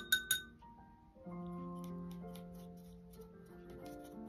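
A paintbrush clinking against a glass jar of rinse water: a few quick, ringing clinks at the very start. Soft background music with held notes plays throughout.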